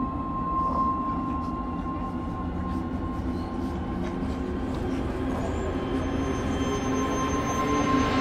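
Film-trailer score: a single high tone held steady over a dense, low rumbling drone, slowly building in loudness.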